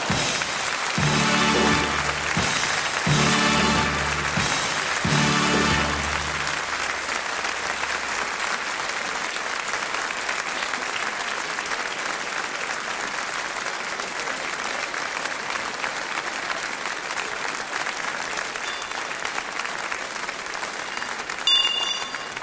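Carnival-session audience applauding after a speech. In the first six seconds, three short held fanfare chords from the band (the Tusch) ring out over the clapping, followed by steady applause.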